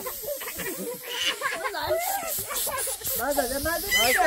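Aerosol party snow-spray cans hissing in continuous sprays, with voices calling over them.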